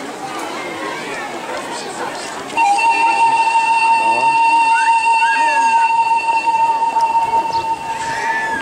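Children's voices murmuring, then, about two and a half seconds in, a loud steady high tone starts suddenly and holds one pitch for about five seconds.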